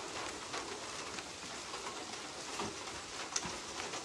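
Steady rain falling, an even hiss with a few faint drop taps.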